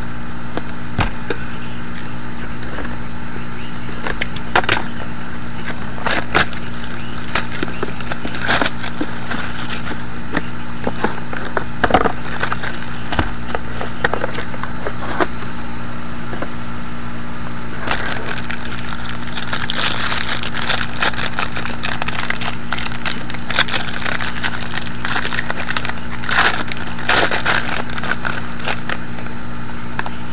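Handling of a trading-card pack: scattered clicks and taps as the small card box is opened, then, from about 18 seconds in, a long stretch of crinkling and tearing as the foil wrapper is pulled off the pack. A steady hum runs underneath.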